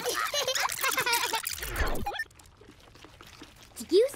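Cartoon sound effect of a video being rewound: a fast, garbled jumble of voice warbling for about two seconds, ending in a falling sweep, then quiet.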